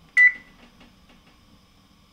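A single short electronic beep from the Whirlpool WFG231LVB1 gas range's control panel, as a key is pressed. It shows the electronic control board has power and is responding.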